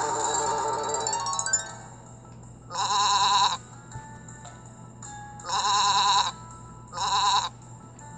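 A cartoon sheep sound effect from a children's story app, bleating three times with a trembling call, each under a second long. It follows a short twinkling musical cue at the start, over a faint steady low hum.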